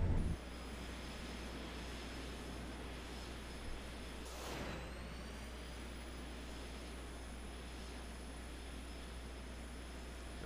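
Flight-simulator engine sound of a Bombardier CRJ regional jet's rear-mounted turbofans in the climb after takeoff: a steady jet rumble with a thin high whine. About four and a half seconds in, the sound swells briefly and the whine drops a little in pitch.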